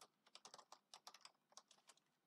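Faint, quick typing on a computer keyboard: a rapid run of key clicks with a brief pause a little after a second in.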